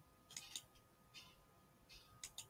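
Near silence, with a few faint computer mouse clicks: two close together about a third of a second in, and another about a second in.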